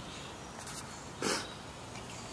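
A Samoyed puppy makes one short, rough vocal sound about a second in, during play among the litter.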